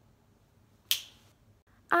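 A single sharp finger snap about a second in, in an otherwise quiet room.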